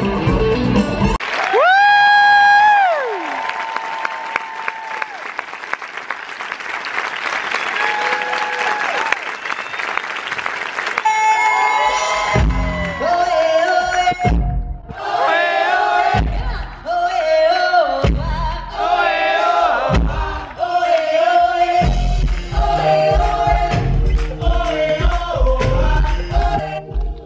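Live musical-theatre band and singers: a long held note that ends about three seconds in, then several seconds of audience cheering and applause. About twelve seconds in, the band and singers start an upbeat Latin number with hand drums.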